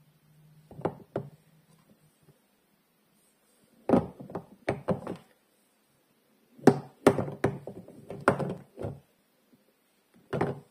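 Hard bars of Camay soap knocking and clacking against one another as they are picked up from a pile and set back down, in three short clusters of sharp knocks with pauses between.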